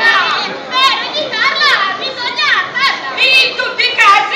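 Several shrill, high-pitched voices crying out in quick squeals with steep falls and rises in pitch, too exaggerated to make out as words.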